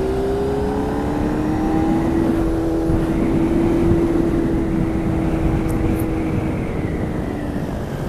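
Motorcycle engine pulling hard at speed, its note climbing slowly for the first few seconds, holding, then easing off near the end, with wind rushing over the microphone.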